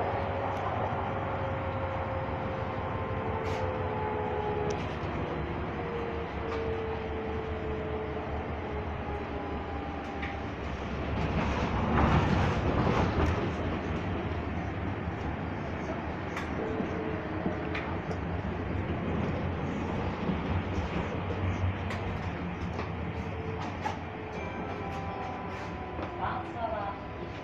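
Stadler low-floor tram running, heard from inside the passenger saloon: a steady rumble of wheels on rail with faint electric motor whines sliding down in pitch over the first several seconds. The rumble grows louder for a couple of seconds about eleven seconds in, and there are scattered light clicks.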